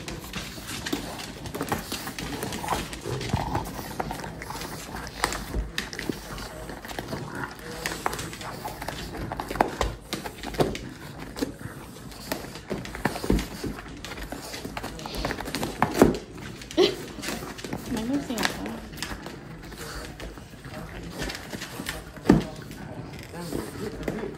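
French bulldogs pawing, scratching and nosing at a cardboard box on a wooden floor: irregular scrapes and knocks of claws on cardboard and nails on the floor, a few louder thumps among them.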